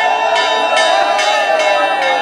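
Metal bells ringing, struck over and over about two or three times a second so their tones hang on continuously, over the voices of a crowd.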